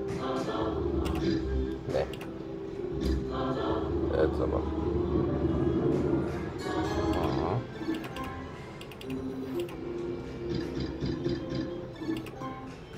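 Novoline Book of Ra Classic slot machine playing its electronic free-spin melody as the reels spin, with sharp clicks as the reels stop. The first two-thirds is louder and busier than the end.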